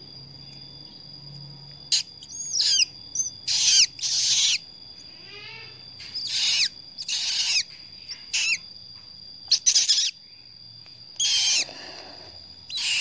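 Newly hatched sulphur-crested cockatoo chick (Cacatua galerita eleonora) giving short, high food-begging calls, about eight of them with brief pauses between, while being hand-fed from a syringe.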